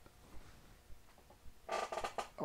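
Faint light taps from handling, then near the end a short, loud sound with a steady pitch.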